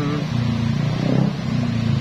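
Motor-vehicle traffic on the road beside the walkway: a low engine hum that swells and shifts in pitch about halfway through.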